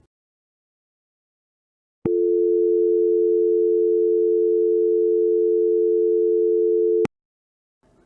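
North American dial tone (350 Hz and 440 Hz played together): a steady, continuous hum with a slight beat. It starts about two seconds in with a click and cuts off with another click about five seconds later. It is the signal that the line is available and ready for dialing.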